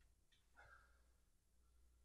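Near silence: room tone with a low steady hum, and one faint, brief sound about half a second in.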